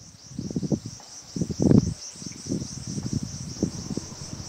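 Insects chirring steadily in a high, slightly pulsing drone, with irregular low gusts of wind buffeting the microphone, strongest about a second and a half in.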